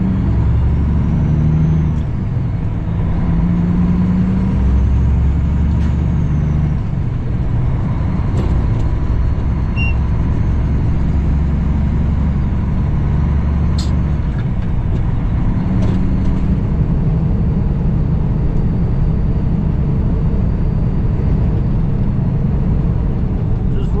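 Cummins ISX diesel engine of a 2008 Kenworth W900L semi truck running under way, heard inside the cab as a steady low drone with road noise. Its pitch moves up and down over the first several seconds, then holds steady. A few faint ticks come through in the middle.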